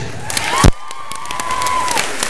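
Audience applauding and cheering in a gymnasium, with one loud sharp knock about two-thirds of a second in, then a single long high cheer held for about a second.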